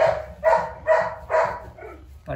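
Beagle puppy barking: four short, high barks about half a second apart, with a fainter fifth near the end.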